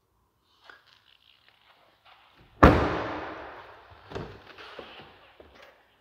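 A 2016 Audi S3's rear door shut with one solid thunk about two and a half seconds in, echoing in a hard-walled room, followed by a lighter knock a second and a half later.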